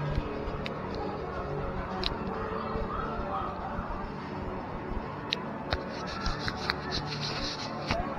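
Outdoor theme-park ambience: faint music and distant voices, with a run of sharp, irregular clicks in the last three seconds.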